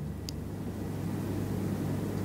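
A pause with no words: a steady low hum and faint hiss of room background, with one small click about a quarter of a second in.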